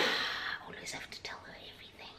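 A woman's voice finishing a word, then faint whispering.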